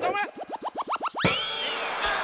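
Edited-in cartoon sound effect: a quickening run of about ten rising boing sweeps, each climbing higher than the last, ending in a thump and one long swooping whistle that rises and then falls.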